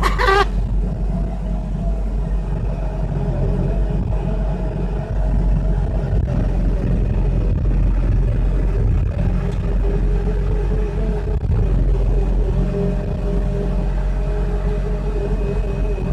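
Excavator's diesel engine and hydraulics running steadily under load, heard from inside the cab, with a wavering whine over the engine drone as the boom lifts and swings loads of trash.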